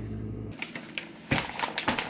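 Refrigerator hum that cuts off about half a second in, followed by crackling and two sharp knocks from a potato chip bag being handled.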